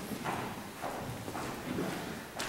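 Footsteps across a stage floor, about four steps at roughly two a second.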